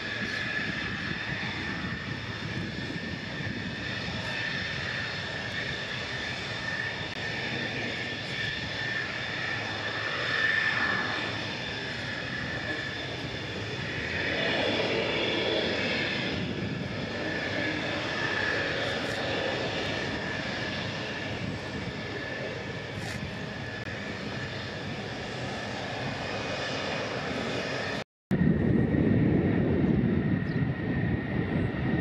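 F-16 fighter's jet engine running at taxi power: a steady rush with a high whine over it, swelling briefly twice in the first half. The sound drops out for a moment near the end, then comes back louder.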